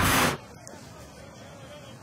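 Television sports-broadcast transition whoosh that goes with an ESPN logo wipe: a loud rushing noise that cuts off sharply about a third of a second in. After it comes a faint, steady stadium crowd background.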